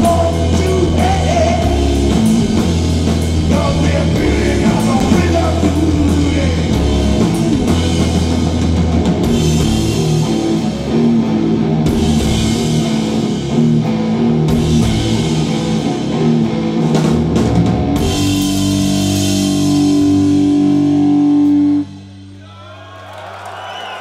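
Stoner rock band playing live: heavily distorted electric guitar and bass over a pounding drum kit with crashing cymbals. About 18 s in, the band lands on a long held final chord, which stops abruptly about four seconds before the end and leaves a quieter fading tail.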